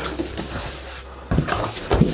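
Flaps of a large cardboard box being lifted and folded back: cardboard scraping and rustling, with two dull thumps in the second half.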